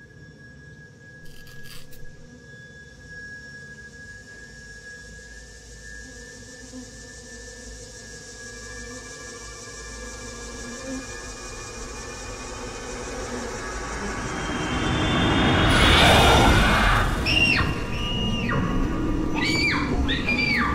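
Suspense film score: quiet sustained drones and high held tones that slowly swell into a loud crescendo about sixteen seconds in, followed by several shrill, bending squeals near the end.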